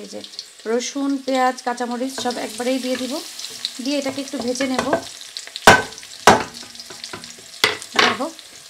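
Chopped garlic frying in hot oil in an aluminium pan while sliced onions and green chillies are tipped in off a wooden cutting board. Two loud, sharp knocks come a little past the middle and a smaller one near the end.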